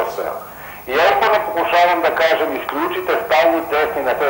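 Only speech: a man talking over a telephone line, with a short pause just under a second in.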